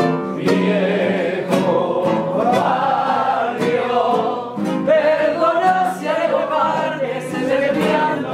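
A tango sung live with acoustic guitar accompaniment, several voices carrying the melody together.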